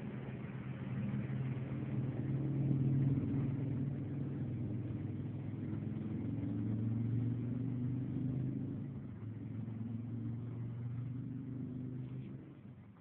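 A motor engine running, a low hum that wavers in pitch and swells and eases in level, fading near the end.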